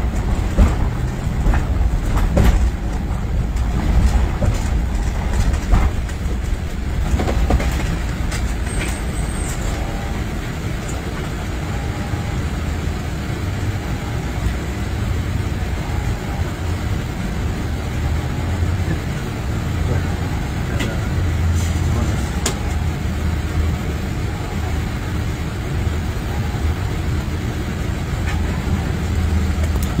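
Steady low road rumble of a moving ambulance, heard from the patient compartment, with occasional short knocks and rattles.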